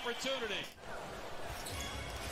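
Basketball being dribbled on a hardwood court in the game broadcast, low repeated thuds from about halfway through, after brief commentator speech.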